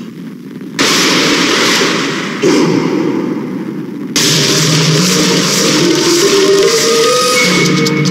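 Action-film soundtrack: two sudden loud noisy hits, about a second in and again about four seconds in, over dramatic background music whose notes climb near the end.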